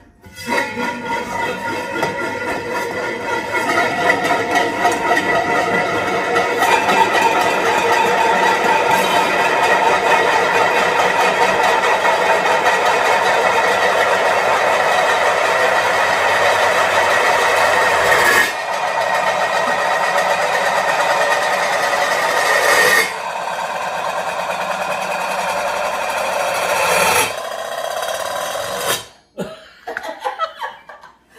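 Four metal pot lids spinning and wobbling on their rims on a countertop, a continuous metallic rattle that grows over the first several seconds. It then drops in four steps as the lids settle and stop one after another, the last one about a second before the end.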